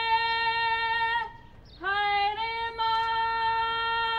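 Karanga, the Māori ceremonial welcome call, sung by a woman's solo voice in long, steady high notes. The first held note breaks off just over a second in, and after a short pause a new note slides up into place and is held to the end.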